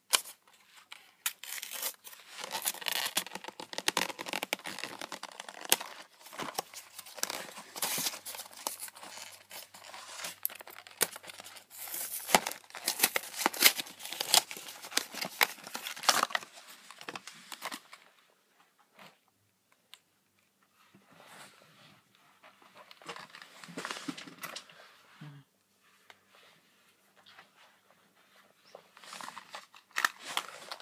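Packaging of a Pokémon trading card theme deck being torn open and crinkled: a long run of dense tearing and crackling, then softer, scattered rustling that picks up again near the end.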